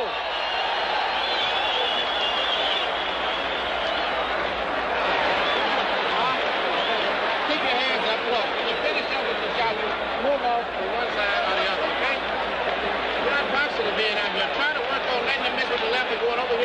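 Boxing arena crowd noise: a dense, steady din of many voices shouting at once, with no single voice standing out.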